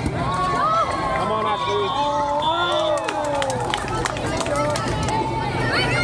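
Volleyball players and people courtside calling out during a rally on an outdoor court, over background chatter from other courts. Several sharp taps come in the middle, fitting the ball being played.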